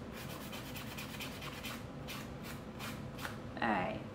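Nail buffer block rubbed quickly back and forth over a dip-powder nail, a dry scratchy rasp at about three to four strokes a second, smoothing the hardened powder coat.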